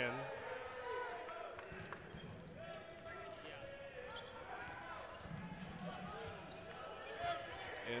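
A basketball dribbled on a hardwood court, with faint voices calling out across the gym.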